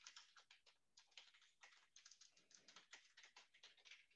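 Faint typing on a computer keyboard: a quick, uneven run of key clicks as a line of text is typed.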